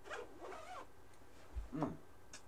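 The zipper of a hooded camouflage jacket zipped, a rasp lasting under a second. Near the end there is a low thump and a short murmured "mm".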